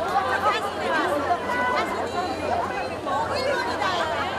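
Several people's voices talking over one another: unclear chatter with no single clear speaker.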